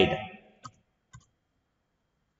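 Two short, sharp mouse clicks about half a second apart, advancing a slide presentation to the next slide.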